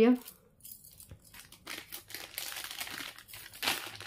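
Thin plastic packaging crinkling as it is handled: an irregular crackle that starts under a second in and grows busier and louder toward the end.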